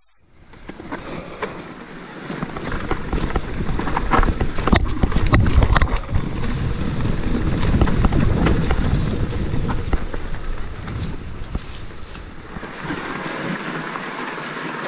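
Wind noise on the action camera's microphone and an electric mountain bike rolling over a dirt trail, with scattered knocks and rattles over bumps; it grows louder after a couple of seconds and is strongest in the middle.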